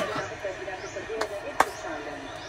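A few sharp knocks, the loudest about one and a half seconds in, with a weaker one just before it.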